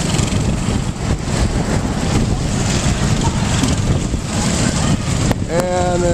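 Go-kart engines running as karts circle the track, with wind rumbling on the microphone.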